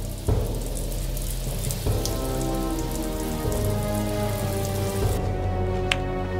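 Rain falling, a steady hiss, over a film score of held low notes that change every second or two. The rain cuts out about five seconds in, and a sharp click follows just before the end.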